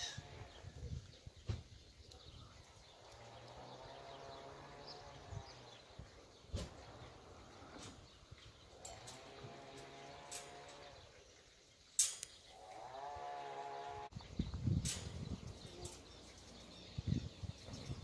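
Three drawn-out, level-pitched animal calls, each a second or two long, spaced a few seconds apart. A few sharp knocks from hands working on the wire-mesh cage fall between them; the loudest comes about twelve seconds in.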